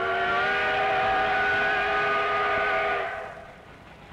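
Steam locomotive whistle: one long, steady blast that fades out about three seconds in.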